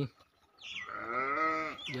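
A calf bleats once: a single call of just over a second that rises and then falls in pitch.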